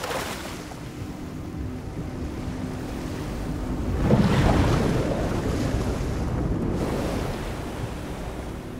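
Sea waves and wind on open water, with a swell surging and breaking loudest about four seconds in and then slowly ebbing. A faint low steady tone runs underneath in the first half.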